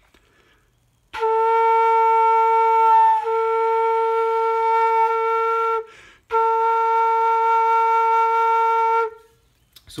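Homemade bamboo flute playing two long, steady held notes separated by a short breath about six seconds in. It is aiming for B flat, but the pitch still sits between A and B flat, so the finger hole needs further widening.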